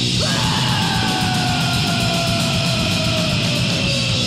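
Thrash metal demo recording: fast, loud distorted band music with drums, over which a single long high note starts just after the beginning and slides slowly down in pitch.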